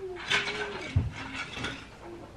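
Plastic toys clattering and clicking on a wooden floor, with one thump about a second in.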